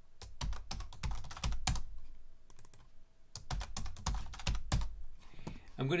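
Typing on a computer keyboard: two quick runs of keystrokes with a short pause between them.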